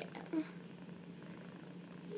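Tabby cat purring steadily while held close, a continuous low hum, with a short vocal sound shortly after the start.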